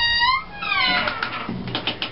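Two squeaks of the Caterpillar 824B's old cab door hinges as the door is opened: a short steady squeal, then a longer one that falls in pitch.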